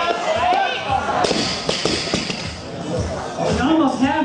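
A loaded barbell with rubber bumper plates dropped from overhead onto the lifting platform after a clean and jerk, hitting with a few sharp impacts about a second in. Voices shout and cheer over it.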